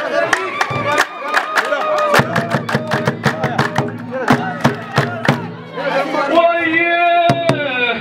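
Men clapping their hands together in a quick rhythm under a man's chanting voice. The clapping stops about six seconds in and the solo voice carries on alone.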